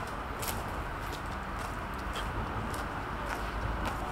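Footsteps on a gravel path at a steady walking pace, about two steps a second, over a steady low rumble of background noise.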